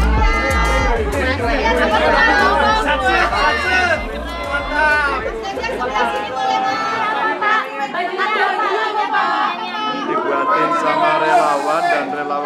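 Many people chattering at once over background music with a heavy bass line; the music fades out about halfway through, leaving the chatter.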